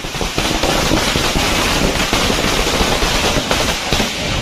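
A string of firecrackers going off in a rapid, continuous crackle of bangs.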